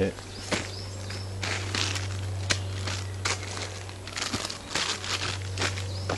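Plastic rustling and crinkling as a packed emergency bivvy bag is set down on a poncho groundsheet and gear is shifted about, in a string of short scrapes, over a steady low hum.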